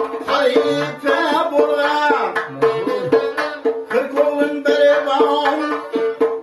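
A man singing with a gliding, ornamented voice over a plucked long-necked tar, which repeats steady notes, while a doira frame drum is struck with the fingers in a quick, even rhythm.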